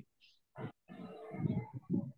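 A short sound about half a second in, then a muffled, indistinct person's voice over the last second.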